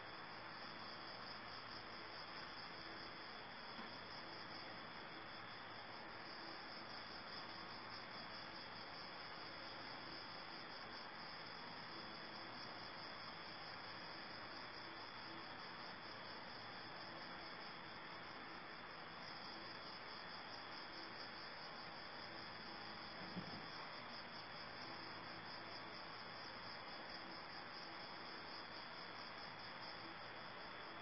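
Faint, steady, high-pitched chirring of insects, an unbroken pulsing chorus, with one soft tap about three quarters of the way through.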